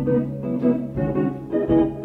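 Live jazz-rock instrumental music: electric guitar with the band's rhythm section and keyboard, notes and chords changing several times a second. The sound comes from an old, well-played cassette tape recording.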